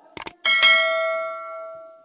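Subscribe-button animation sound effect: a quick double mouse click just after the start, then a bell ding about half a second in that rings and fades out over about a second and a half.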